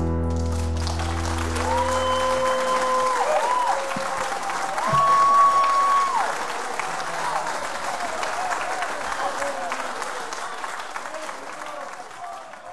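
Live audience applauding and cheering at the end of a song, with the last acoustic guitar chord ringing out and fading in the first couple of seconds. Two long whoops rise over the clapping, and the applause fades away near the end.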